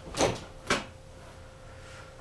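Two sharp knocks on the foosball table, about half a second apart, the first with a brief scrape.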